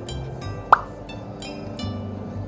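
Light background music made of short plucked notes. About three quarters of a second in, a single loud, quick 'pop' sound effect sweeps upward in pitch.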